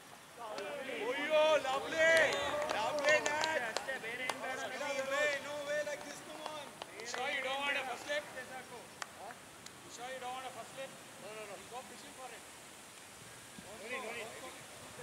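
Several men's voices shouting and calling to each other, indistinct words, loudest over the first eight seconds or so, with fainter calls later on.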